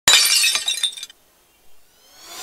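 Glass-shattering sound effect: a sudden crash of breaking glass with tinkling shards that dies away after about a second.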